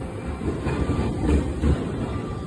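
Marine Liner electric train pulling into the platform, its cars passing close by, with wheels clattering over rail joints in several low thumps over a steady running rumble.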